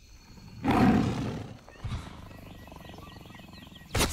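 A loud animal call, rising and then falling away, about a second in, followed by faint chirping birdsong over a low steady background, and a short sharp burst at the very end.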